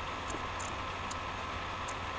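Steady low hum and hiss of background room noise, with a few faint, short ticks at irregular intervals.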